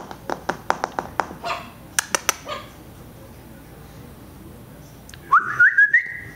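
A person calling a puppy: a run of quick clicking sounds, then, after a pause, a short whistle that rises in pitch in little steps near the end.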